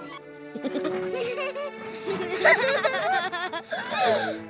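Light cartoon background music with animated characters giggling in wordless voices from about a second in.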